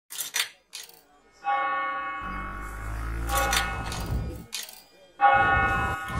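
A bell struck twice, about a second and a half in and again near the end, each strike ringing on and slowly fading; a few sharp clicks come before the first strike and a low rumble sits under the middle.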